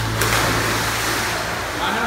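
A person jumping into a pool: a sudden loud splash just after the start, followed by a second or so of churning, washing water.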